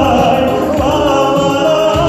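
A man singing a slow song into a microphone over instrumental accompaniment, heard through the hall's sound system.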